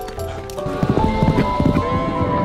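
Background music of long held notes, with a short run of horse hoofbeats from just under a second in until near the end.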